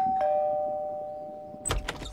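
Two-tone ding-dong doorbell chime, a higher note then a lower one, both ringing out and slowly fading. Near the end a sharp click and low thump as the front door is opened.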